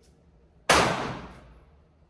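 A single gunshot about two-thirds of a second in, loud and sharp, echoing and dying away over about a second in the hard, reverberant space of an indoor shooting range.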